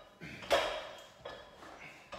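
Metal clinks from a loaded barbell rattling in its landmine pivot and against its weight plate as it is moved through squat reps: two knocks, the second fainter.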